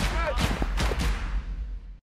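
Young rugby players shouting on the pitch, mixed with a few sharp knocks, the sound fading out near the end.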